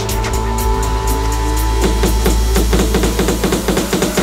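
Tech house music: a sustained bass and held synth chords under ticking hi-hats. About halfway in, a fast repeating stabbing synth figure enters, with a slowly rising tone beneath it.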